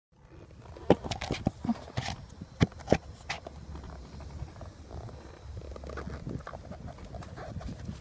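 Handling noise from a camera being moved about against a horse's saddle and tack: several sharp knocks and rubbing in the first three seconds or so, then a lower, steady rumble.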